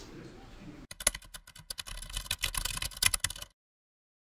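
Faint room tone, then about a second in a dense, irregular run of small clicks and knocks lasting about two and a half seconds, cut off abruptly.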